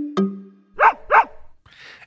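Short musical sting: a plucked note rings out, then a dog barks twice in quick succession, the barks louder than the note.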